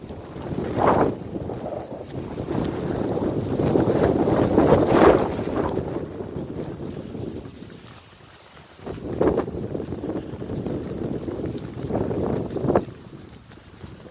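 Wind buffeting the microphone in gusts: a long gust over the first seven seconds or so, a lull, then a second gust that cuts off sharply near the end.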